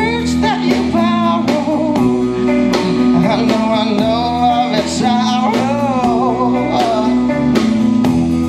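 A live rock band playing: a male voice singing over electric guitar, electric bass and a drum kit.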